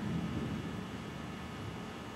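Steady low-level room tone: an even hiss with a faint low hum, and no distinct sound events.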